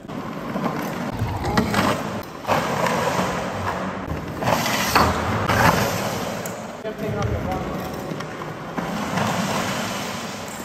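A drift trike rolling and sliding sideways across a concrete floor: a steady rumbling skid from its rear wheels, with a few knocks, loudest about halfway through.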